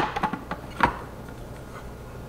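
Plastic fill cap being screwed onto a Levoit Classic 100 humidifier's water tank, with a few light clicks and one sharper knock just under a second in.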